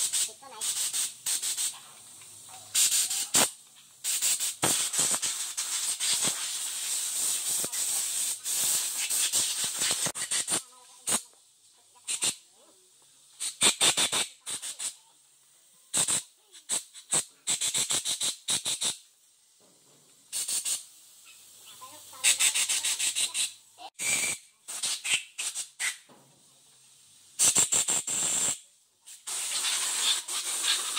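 Compressed-air siphon spray gun hissing in many short, irregular bursts as the trigger is pulled and released, blasting cleaning fluid over a crankshaft.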